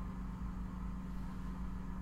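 Steady low background hum with a constant low tone, the room's own noise.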